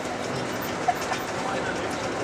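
Steady running and road noise inside the cabin of a moving bus, with faint passenger talk and a single short sharp click a little under a second in.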